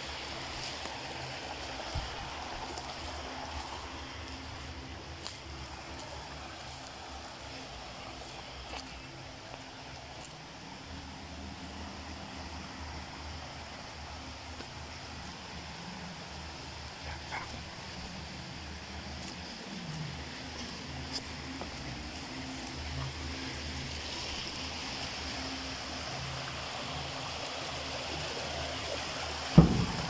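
A river flowing: a steady rush of running water, with a few faint clicks.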